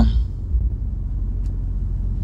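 Low steady rumble of a BMW M5 heard from inside its cabin: engine and road noise while driving.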